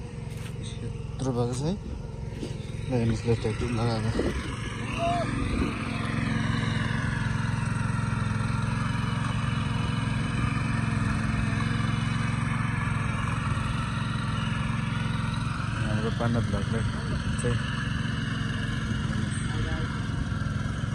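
Small engine of a walk-behind power tiller running steadily under load as it works the soil, its drone growing louder about a quarter of the way in. Voices are heard over it near the start and again late on.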